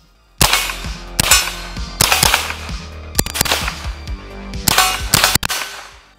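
Smith & Wesson M&P 15-22 semi-automatic .22 LR rifle firing a string of quick shots. The shots start about half a second in and come in uneven clusters, some in fast pairs.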